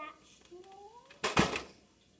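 A child's voice making short wavering, gliding sounds, then one loud, short thud-like burst of noise with two quick peaks about a second and a quarter in.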